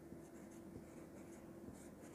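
Marker pen writing on a whiteboard, faint short strokes one after another, over a faint steady hum.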